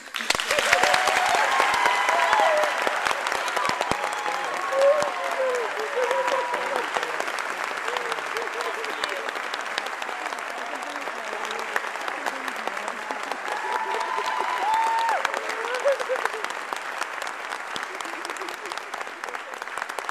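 An audience breaks into applause all at once. Voices call out over the clapping in the first few seconds and again about fifteen seconds in.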